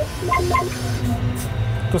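Soft background music of short melodic notes over the steady low drone of a tractor engine heard inside the cab.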